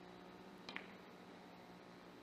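Three-cushion billiards shot: a single faint click about two-thirds of a second in, the cue tip striking the cue ball and the cue ball hitting the object ball resting right beside it almost at once. Otherwise near silence.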